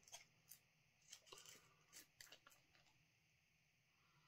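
Near silence, with a few faint clicks and light ticks scattered through the first two and a half seconds from a hot sauce bottle being handled and lifted to the nose.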